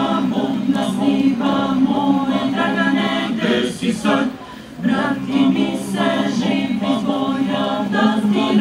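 Small mixed choir singing a cappella, with a brief break between phrases about halfway through.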